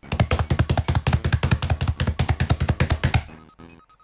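Music: fast, even drumming on a drum kit, about ten hits a second, that stops a little after three seconds in.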